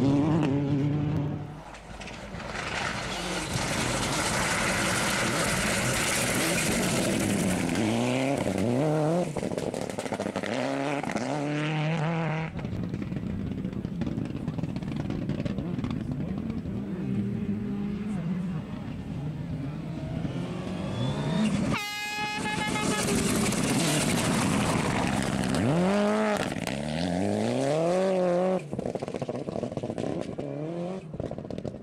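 Rally cars on a gravel stage accelerating hard, engine pitch climbing and dropping back with each upshift, over a hiss of tyre and gravel noise. A single sharp crack comes a little past the middle.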